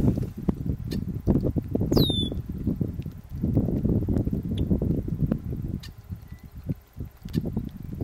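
Wind buffeting the microphone in uneven gusts, with one brief, steeply falling whistled bird note about two seconds in.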